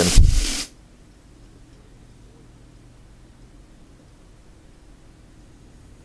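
Hanger steak frying in a very hot pan with a knob of butter, a loud sizzle that cuts off abruptly under a second in, leaving only a faint low hum.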